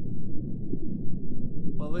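Low, muffled rumbling drone of an intro sound effect, with nothing above the low range. A man's voice starts over it near the end.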